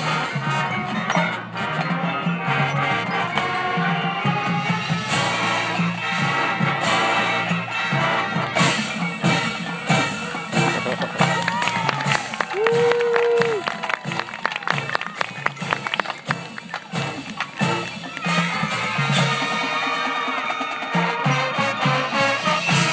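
Marching band playing its field show: brass and winds over drumline and front-ensemble percussion, with sharp percussion hits throughout, thickest in the middle.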